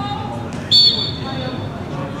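Referee's whistle: one short, high blast about two-thirds of a second in, signalling the kick-off of the second half, over players' calls on the pitch.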